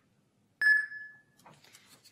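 A single electronic ding from an electronic poll book tablet as it scans the barcode on a ballot stub, just over half a second in, ringing out and fading within about a second. The scan is of the wrong ballot, and the tablet flags a ballot-style mismatch.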